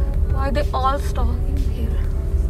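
Steady low rumble of a car driving, heard inside the cabin, under music, with a short high-pitched voice about half a second in that lasts under a second.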